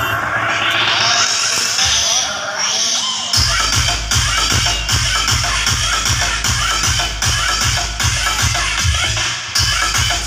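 Electronic dance music played loud through an outdoor DJ sound system. A rising build-up with no bass runs for about three seconds, then a heavy kick drum and bass drop in on a steady beat of about two strokes a second, with a short break near the end.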